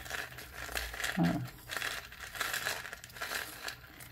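Paper masking tape being wound by hand around a cardboard tube, crinkling and rustling in soft, irregular scratches.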